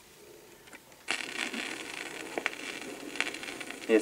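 Turntable stylus set down on a spinning sonosheet flexi-disc about a second in, then steady surface hiss with a few clicks and pops from the record's lead-in groove.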